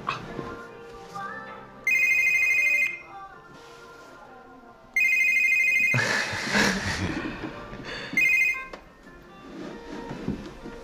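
Mobile phone ringing: a high electronic ring tone in three bursts, about a second each, near 2 s, 5 s and 8 s in, over soft background music.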